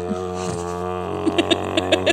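A person's voice imitating the electric tow bar's release motor straining, held as one long, steady droning hum. Another person's short laughs come in over it in the second half.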